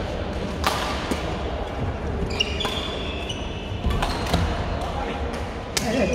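A badminton rally in a large echoing sports hall: several sharp racket strikes on the shuttlecock, and brief squeaks of court shoes on the wooden floor about two to three seconds in, over background chatter.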